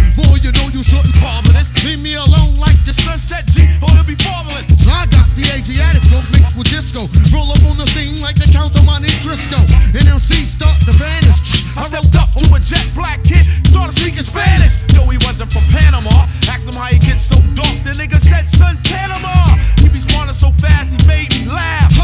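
Hip hop track: a male voice rapping over a beat with a steady, heavy bass pulse.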